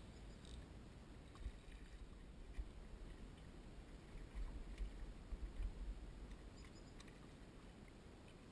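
Low rumbling wind and water noise around a small fishing boat, swelling a couple of times, with a few faint clicks.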